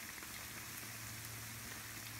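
Akara (black-eyed-pea fritters) deep-frying in hot oil in a pan: a steady sizzle with faint scattered crackles.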